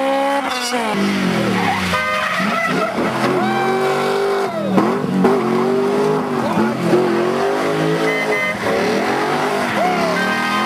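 A rally car's engine revving hard, its note rising and falling over and over as the car slides sideways through a loose-surfaced corner, with its tyres skidding on gravel.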